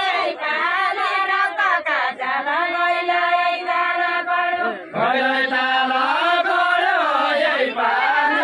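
Unaccompanied group singing of a deuda folk song by women's voices together, with long held notes that bend up and down. There is a brief break about five seconds in before the next line starts.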